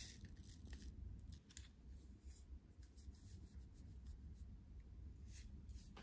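Very quiet handling: faint paper rustles and light ticks as a paper stick of sugar is opened and tipped into a cup of drip coffee, over a low steady room hum.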